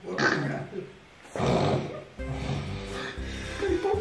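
A man singing through a voice-effect app, the voice coming out in shifting pitched tones, in two phrases with a short break about a second in.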